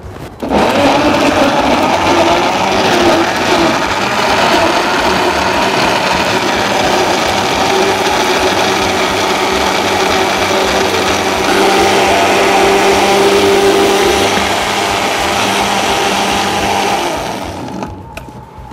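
Countertop blender running, blending ice cubes, strawberries and milk into a smoothie. It switches on about half a second in, sounds rougher over the first few seconds while the ice breaks up, then runs steadily and shuts off shortly before the end.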